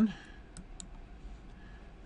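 Two faint computer mouse clicks about a quarter second apart, made while picking a view option from a menu.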